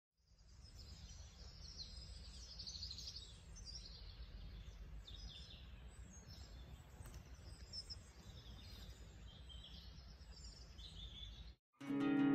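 Faint birdsong: many small birds chirping and twittering in short high calls over a low, steady outdoor rumble. It cuts off suddenly near the end.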